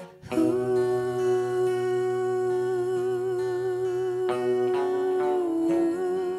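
A woman's voice holding one long wordless note with vibrato over acoustic guitar, the note stepping down slightly near the end.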